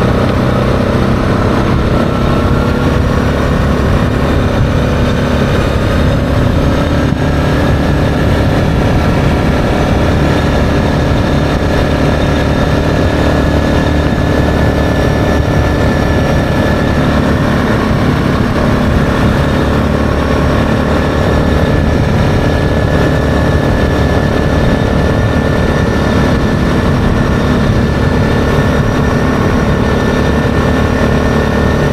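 ATV engine running at a steady cruising speed while riding along a trail, with tyre and wind noise mixed in.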